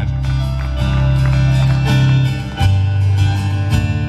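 Live band playing the instrumental opening of a song, heard from the audience: picked guitar over sustained deep low notes that change pitch twice.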